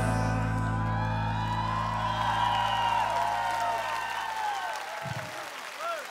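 The band's final held low chord rings out and fades away over about five seconds at the end of a live pop song, while a large audience cheers and whoops. A short low thump comes near the end.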